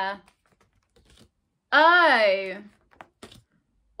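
A woman's voice drawing out a single phonics sound for about a second, starting about two seconds in, its pitch rising then falling. Soft ticks of stiff flashcards being flicked and shuffled in the hands are heard between the sounds.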